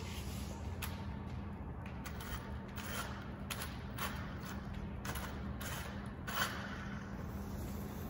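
Small radio-controlled car's electric motor whirring in several short bursts as it is test-driven a little way over a debris-strewn concrete floor, over a steady low hum.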